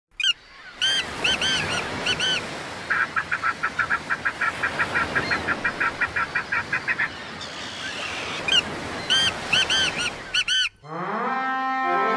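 Birds calling over a steady background hiss. There are clusters of arched honking calls, then a rapid even run of about five calls a second lasting some four seconds, then more honks. About a second before the end the sound cuts suddenly to orchestral music with brass.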